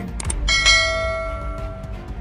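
A single bell-like chime struck once about half a second in, ringing on and slowly fading over about a second and a half, over low background music.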